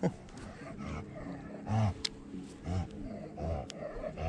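A man's low, short murmured sounds under his breath, three of them in the second half, with a couple of faint sharp clicks between them.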